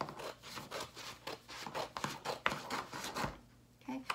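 Scissors cutting through construction paper in a quick run of snips, stopping about three seconds in.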